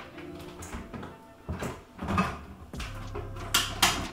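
A few knocks and clatters of multicooker parts being handled, the loudest two close together near the end.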